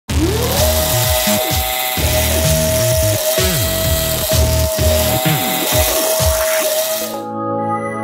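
Intro music laid over the whir of two DC gearmotors driven through a motor driver by a joystick. The motor whine rises in pitch as they spin up, then holds steady while their speed varies. The busy whirring sound cuts off about seven seconds in, leaving only music.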